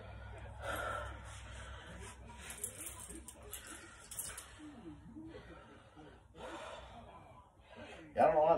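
A man's quiet breaths and exhales while doing resistance-band front shoulder raises.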